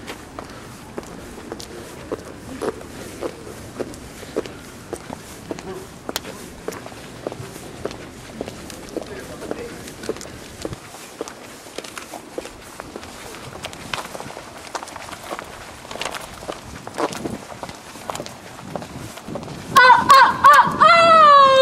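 Footsteps of several people walking on pavement, an irregular run of taps and scuffs, with faint voices in the background. Near the end a loud high-pitched shout breaks out.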